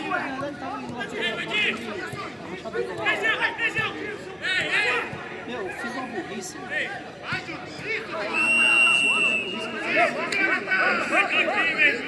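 Footballers shouting and calling to one another on the pitch, with a single whistle blast of about a second a little past the middle.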